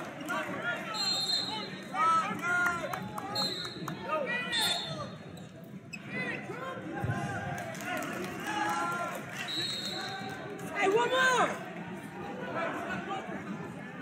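Coaches and spectators shouting and calling out during a wrestling bout in a large hall, several voices overlapping, with louder bursts of yelling about two, four and eleven seconds in. A dull thump sounds near the middle.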